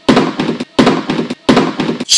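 Metal-framed school chair knocked three times in an even beat, about 0.7 seconds apart, each a sharp loud hit with a short ringing tail.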